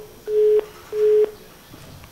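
Telephone busy tone on the call-in phone line, the sign that the caller's call has been cut off: short steady beeps about a third of a second long with equal gaps, stopping about a second and a half in.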